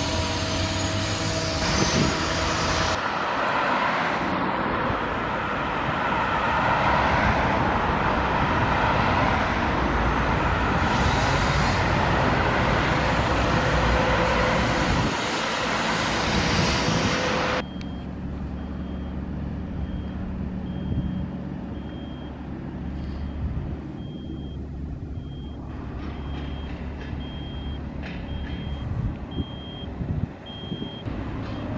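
A multi-axle mobile crane driving in street traffic, a loud, even road and engine noise. About two-thirds of the way through the sound cuts to a lower diesel rumble with a reversing alarm beeping about once a second.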